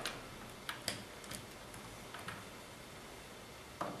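A few faint, scattered clicks and taps of small metal parts being handled as the threaded Z-axis rod is worked out of a 3D printer frame.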